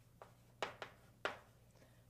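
Chalk writing on a blackboard: four short, faint strokes and taps of the chalk as an expression is written.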